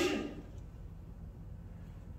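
A pause in speech: a voice trails off in the hall, then steady low hum and room tone.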